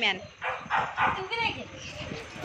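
A pet dog whining and yipping in short, uneven sounds, mixed with people's voices.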